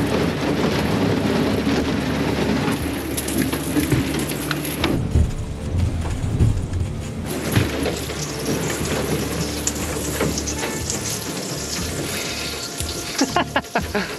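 Thin sheet ice on a river cracking and crunching against the bows of an aluminium pontoon boat as it pushes through, a dense crackle of breaking ice over a low rumble.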